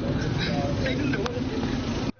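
Indistinct speech from a phone conversation, heard over a steady outdoor background rumble.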